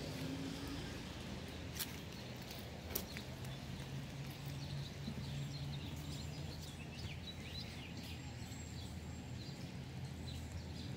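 Outdoor ambience with birds chirping faintly over a low steady hum, and two sharp clicks a little before two and three seconds in.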